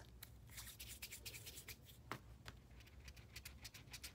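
Faint, quick rubbing strokes of a palm rolling a small piece of polymer clay back and forth on a cutting mat, with one sharper click about two seconds in.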